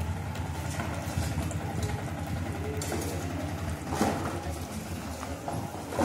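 A motor engine idling with a steady low rumble, with scraping and clattering of shovels and metal pans on gravel, loudest about four seconds in and again near the end.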